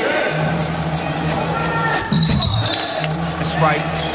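A live volleyball rally in a gym: the ball is struck in sharp knocks while players call out, over a steady low hum.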